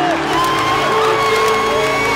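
Arena crowd cheering and whooping over background music with long held notes.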